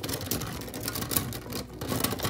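Plastic pens clattering against each other and against a wire-mesh pen cup as a hand rummages through them, a quick irregular run of clicks and rattles.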